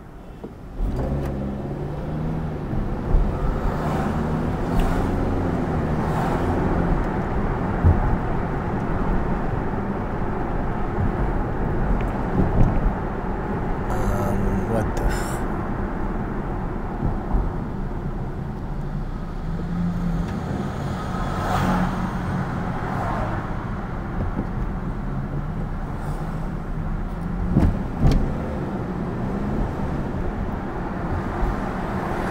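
Car's engine and road noise heard from inside the cabin as it pulls away from a stop about a second in and speeds up, the engine note rising and falling through the gears, then running steadily in traffic.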